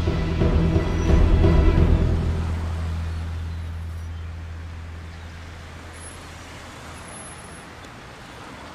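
A low, steady droning tone with overtones, loud at first and slowly fading away over the following seconds.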